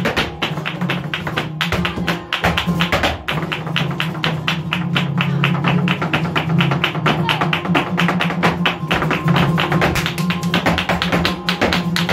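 Live flamenco: rapid percussive footwork taps from a dancer's heels and toes on the stage floor, over flamenco guitar.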